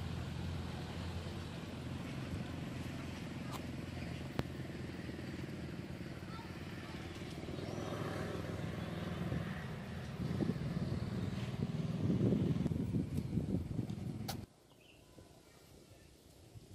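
Outdoor ambience with a motorbike engine passing, growing louder over the last few seconds and cutting off abruptly shortly before the end, with faint voices in the background.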